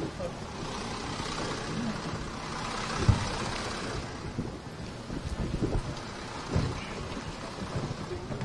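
Crowd bustle outdoors: indistinct murmuring voices and shuffling of a small crowd moving about, with a short thump about three seconds in.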